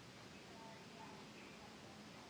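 Near silence: small-room tone, with a few faint short tones.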